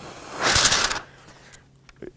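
A person blowing a short breath across the top of a sheet of paper held just below the lips: a breathy hiss lasting about half a second, a little under half a second in.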